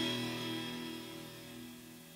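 A rock song's last guitar-and-bass chord held and fading out, dying steadily away to almost nothing by the end.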